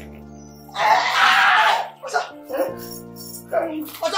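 Background film music of sustained held chords, with a man's loud cry about a second in lasting roughly a second, followed by a few shorter cries and grunts.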